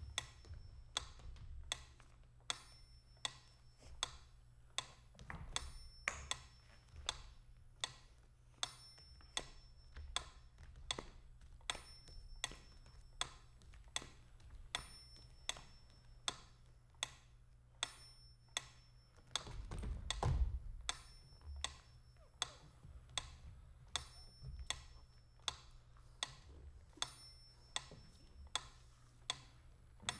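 Steady, clock-like ticking in the performance's sound score: sharp ticks about one and a half a second, evenly paced, with faint high pings among them. A low rumble swells under the ticks about two-thirds of the way through and is the loudest moment.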